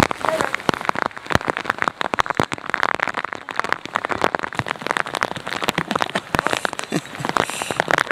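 Rain falling and hitting close to the microphone: a dense, irregular run of sharp taps.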